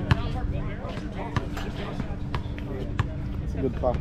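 Basketball bouncing on an outdoor hard court during play, a handful of sharp bounces spaced about a second apart, with players' voices around it.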